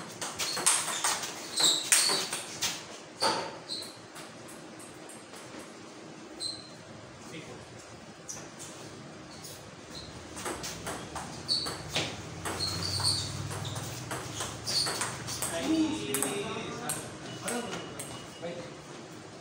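Table tennis ball clicking off rubber bats and the tabletop in a doubles rally: a quick run of sharp, irregular knocks, loudest in the first few seconds and picking up again later.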